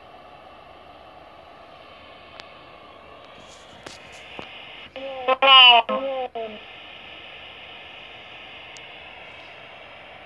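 Ghost-box radio app playing from a tablet's speaker: a steady hiss of static, broken about five seconds in by a brief, louder voice-like fragment.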